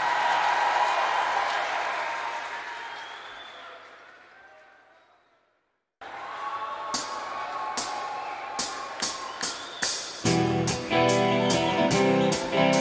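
Arena crowd noise fading away into silence about five seconds in, a gap between live tracks. The next track then starts with sharp, steady beats about two and a half a second, joined near the end by strummed guitar chords.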